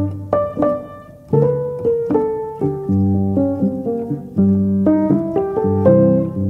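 Slow, classical-style piano music: struck notes and chords over low held notes, thinning to a quiet fading note about a second in before the chords come back.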